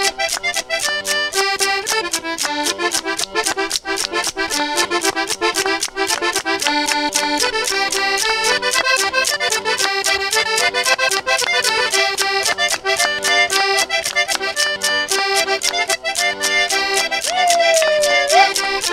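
A Circassian folk ensemble playing a fast dance tune led by accordion, over a driving, even percussion beat of several strikes a second.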